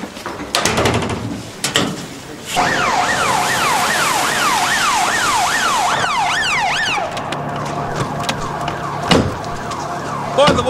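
UK police patrol car siren wailing rapidly up and down, about two to three sweeps a second, starting about two and a half seconds in and cutting off suddenly about seven seconds in. The car's engine then runs steadily, with a single thump near the end.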